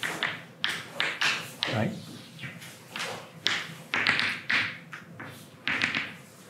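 Chalk on a blackboard: a run of irregular quick taps and short scratchy strokes as figures are written.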